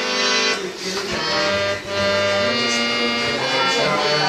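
Harmonium, a hand-pumped reed organ, playing sustained reedy chords and melody notes. The sound breaks off briefly twice in the first two seconds, then resumes.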